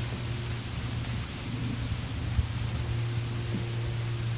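Steady background hiss with a low, even hum underneath, and no distinct calls or events standing out.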